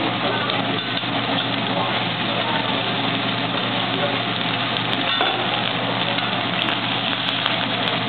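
Eggs sizzling as they fry on a hot teppanyaki griddle, with a steady low hum beneath and a few light clicks in the second half.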